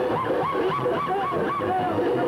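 Live band music with wind instruments playing a quick run of short, separate notes over a steady low bass beat.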